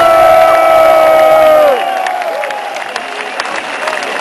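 A live heavy-metal band's final sustained chord rings out and stops sharply under two seconds in. It leaves a large festival crowd cheering and applauding.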